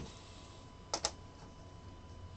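Two quick, light clicks close together about a second in, over a quiet room with a faint steady hum.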